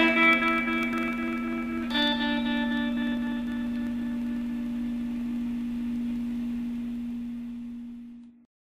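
Closing bars of a depressive black metal song. A guitar chord is struck about two seconds in and rings out over a single held low note, fading away near the end.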